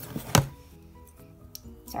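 Paintbrush-set box knocking once, sharply, on a wooden tabletop about a third of a second in, over quiet background music with steady held notes.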